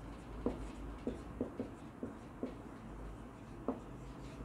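Marker pen writing on a whiteboard: a quick, irregular series of short taps and strokes as words are written out.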